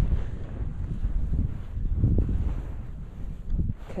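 Wind buffeting the microphone in uneven gusts, a low rumble that swells and fades.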